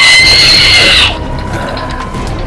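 A loud, high-pitched scream that slides sharply up in pitch, holds steady, then cuts off about a second in.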